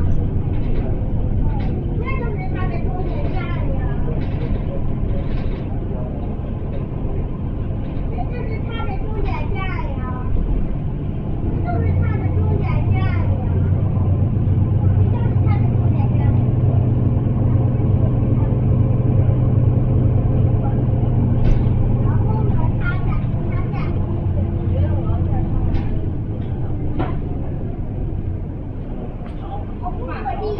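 Mercedes-Benz Citaro bus's diesel engine droning, heard from inside the passenger saloon as it drives; the drone grows louder through the middle and eases off toward the end.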